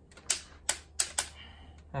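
Torque wrench clicking four times at uneven intervals while tightening the injector rocker shaft bolts on a 2.0 TDI cylinder head to 20 Nm.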